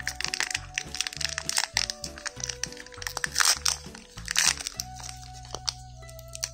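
Crinkling and crackling of a plastic candy wrapper being torn and pulled open by hand, loudest about three and a half and four and a half seconds in, stopping just before the end. Background music plays under it.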